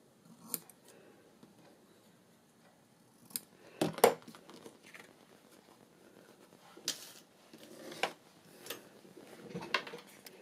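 Scissors snipping through seam binding ribbon: a handful of separate short, sharp snips and clicks, the loudest about four seconds in.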